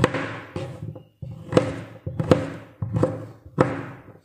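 Kitchen knife chopping fresh ginger and turmeric on a plastic cutting board: about six sharp knocks, half a second to a second apart, each with a short ring.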